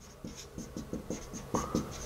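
Dry-erase marker writing on a whiteboard: a quick run of short scratchy strokes, with a brief squeak of the marker tip about three-quarters of the way through.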